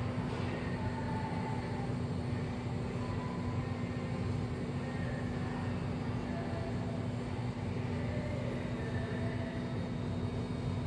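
Steady low machine hum and rumble with a constant droning tone, unchanging throughout.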